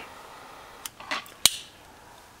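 Two sharp clicks a little over half a second apart, with a faint rustle between them, from handling a butane jet lighter just used to light an Esbit solid-fuel cube.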